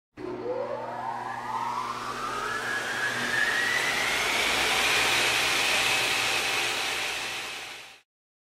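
Intro sound effect for an animated logo: a rushing whoosh whose pitch sweeps steadily upward over several seconds, over a low hum. It grows louder toward the middle and fades out near the end.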